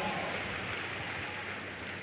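Steady, even rushing background noise in a large hall during a pause in speech, fading slightly over the two seconds.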